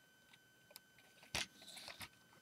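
Hard plastic LEGO model being handled: a few faint ticks, then one sharp click about a second and a half in, followed by a faint rustle.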